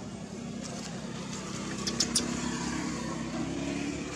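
Steady hum of a motor vehicle engine running, with two sharp clicks in quick succession about halfway through.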